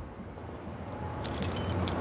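Faint outdoor background noise with a brief light metallic jingle in the second half.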